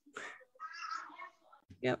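A faint, brief high-pitched vocal sound lasting under a second in the middle, heard over the video call. A woman says 'yep' near the end.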